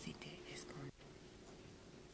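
Two women conferring in whispers, a soft exchange that cuts off suddenly about a second in, leaving faint room tone.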